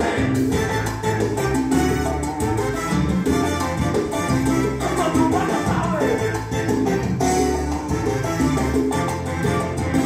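Cuban salsa dance music playing from a full Latin band, with a steady bass and percussion beat.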